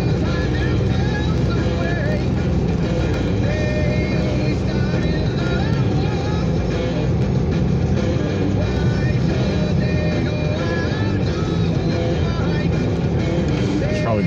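Rock music playing on a car stereo over steady engine and road noise inside the moving car's cabin.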